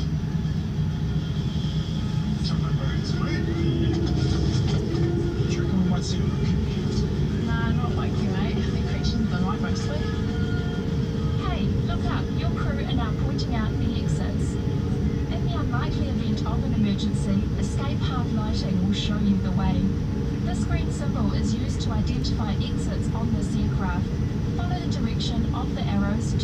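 Cabin noise of a Boeing 787-9 taxiing: a steady low rumble, joined by a steady hum about ten seconds in, with voices from the in-flight safety video playing over it.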